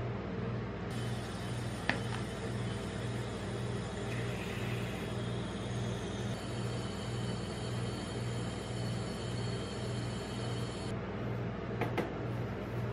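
Steady low hum of a rolled-ice-cream machine's refrigerated cold plate, with a regular pulsing. A sharp tap sounds about two seconds in and another near the end.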